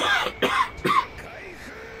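An anime character's male voice calling out the attack name 'Dragon Twister' in Japanese, in a few short bursts during the first second, then quieter.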